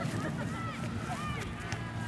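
Faint, distant voices of players and sideline spectators calling out at a youth soccer game, several short calls scattered through the moment, with no nearby voice.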